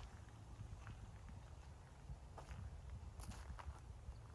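Faint footsteps crunching on a gravel path, a few sharper crunches in the second half, over a low steady rumble.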